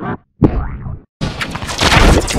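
Heavily distorted Klasky Csupo logo audio: two short boing-like pitched sounds, a brief dropout, then a loud, dense clash of effects and music from about a second in.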